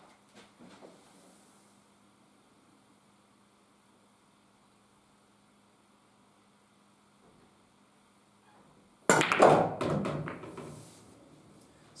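Straight-pool break shot: a sudden clack about nine seconds in as the cue ball, hit with follow, drives into the rack, then a quick run of ball-on-ball clicks and knocks as the balls scatter, dying away over about two seconds.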